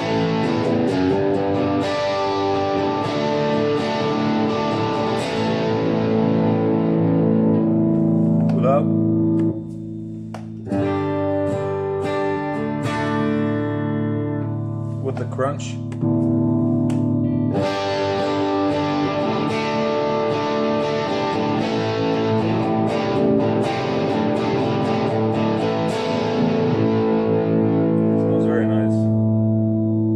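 Electric guitar (Epiphone Les Paul on the bridge pickup) played through the Boss GT-1000's Crunch overdrive type and heard through studio monitors: distorted chords and riffs ringing out, with a short quieter stretch near the middle.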